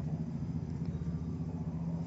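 Steady low hum, the same constant background drone that runs under the talk either side.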